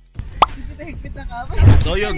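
A single short pop that glides quickly upward in pitch, about half a second in, followed by a man's voice starting to speak with low thumps of wind on the microphone.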